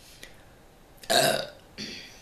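A woman burps once, loudly and briefly, about a second in, followed by a shorter, quieter sound near the end.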